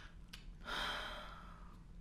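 A person breathing out slowly, a soft exhale that starts just over half a second in and fades away.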